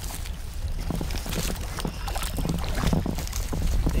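Water splashing and sloshing as a hooked channel catfish thrashes at the surface close to the bank while it is brought in, over a steady rumble of wind on the microphone.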